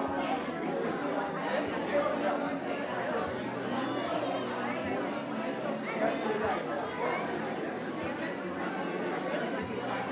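Many people talking at once in a room, indistinct overlapping chatter with no single voice standing out.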